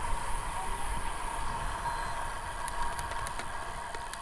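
Steady wind rush on the camera's microphone with tyre noise from a road bike riding on pavement, with a low rumble underneath and a few faint ticks about three seconds in.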